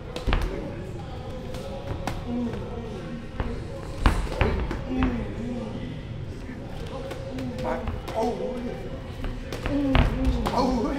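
Muay Thai sparring: kicks and punches landing on boxing gloves and shin guards, several sharp thuds with the loudest about four seconds in.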